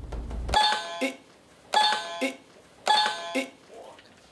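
Low thinking-time music with a drumbeat cuts off about half a second in. It is followed by an electronic two-note 'ding-dong' chime, sounding three times about a second apart.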